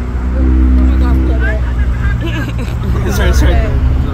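Busy street traffic running past with a steady low rumble and a passing vehicle's hum in the first second or so, while voices speak indistinctly over it.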